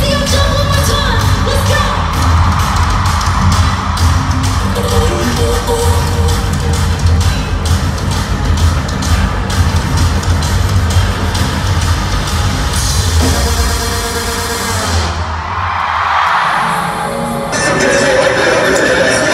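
Loud pop music with singing over a heavy bass beat. The beat drops out for about two seconds near the end, then returns.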